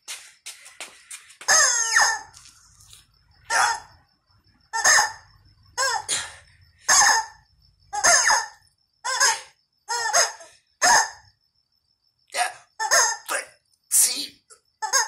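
Screaming yellow rubber chicken squeaky toys squawking as they are squeezed, short squawks about once a second in a steady rhythm. After a brief gap near the end, three squawks follow in quicker succession.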